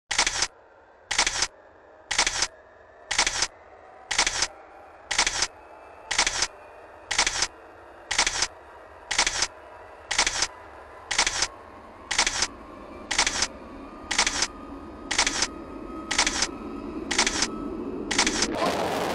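A camera shutter clicking at a steady pace, about once a second, over a faint background that swells towards the end.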